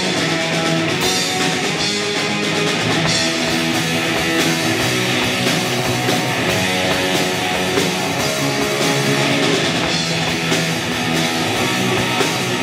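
Live rock band playing an instrumental passage: electric guitar, bass guitar and drum kit, with the cymbals struck throughout.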